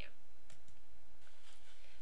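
A faint single mouse click about half a second in, over the recording's steady low hum and hiss.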